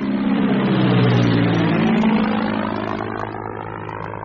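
Aircraft flying over: its engine noise swells to a peak about one to two seconds in, then slowly fades as it passes.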